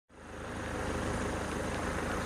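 A motor running steadily, a continuous low rumble with a fast even pulse, fading in at the start.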